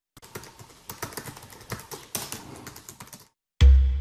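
Fast typing on a computer keyboard: rapid, irregular key clicks for about three seconds. After a brief gap near the end, loud music with a heavy bass beat starts.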